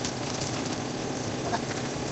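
Steady rushing noise from the cooking at the gas stove, even and unbroken.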